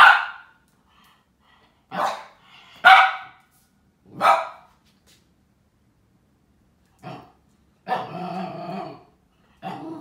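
A dog barking in alarm at a light-up Halloween skull whose light flashes on and off: single sharp barks every second or two, then one longer, drawn-out bark about eight seconds in.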